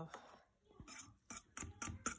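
A few faint, short clicks and ticks as a plastic fork is handled over a plastic lunch box and its steel food jar. The end of a spoken word is heard at the very start.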